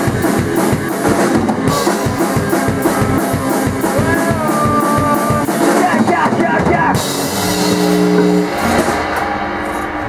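Rock band jam with electric guitar and drum kit playing to a steady beat. About seven seconds in, the playing ends on a cymbal crash and a held chord that rings out and fades.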